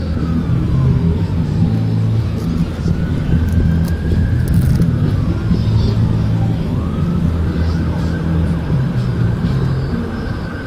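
A siren wailing, its pitch sliding slowly down and back up twice, over a loud steady low rumble.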